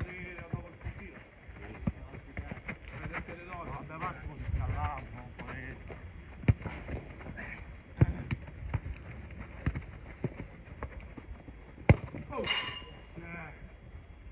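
A football being kicked on artificial turf: a handful of sharp thuds spread a second or more apart, two of them the loudest sounds. Players call and shout between the kicks, with one loud shout near the end.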